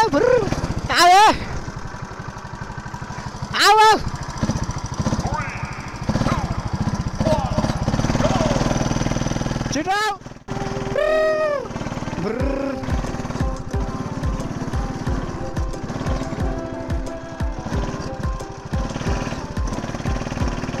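Go-kart engine running at speed around the track, with a dense pulsing drone under it. Several short, loud sweeps that rise and then fall in pitch stand out, the loudest about one second in and near four seconds in.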